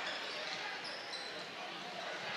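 Live basketball game sound in a gymnasium: a steady crowd murmur with a ball being dribbled on the hardwood court and a few short high squeaks from sneakers.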